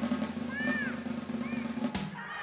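A suspense drum roll over a steady low note, cut off by a single sharp hit near the end.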